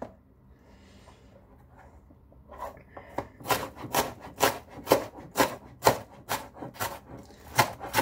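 Kitchen knife chopping onion finely on a cutting board: quiet for the first two and a half seconds, then a steady run of knife strikes on the board, about two or three a second.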